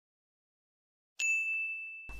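A single high 'ding' chime sound effect about a second in, one clear ringing tone that fades over the next second, marking the answer being revealed when the quiz countdown runs out.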